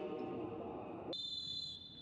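Referee's whistle blown in one long, steady blast for the kick-off, starting about halfway through and following a low background hum.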